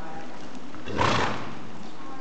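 A horse snorting: one short, breathy blow about a second in, lasting about half a second, with no clear pitch. Behind it, hoofbeats of horses walking on the soft arena footing.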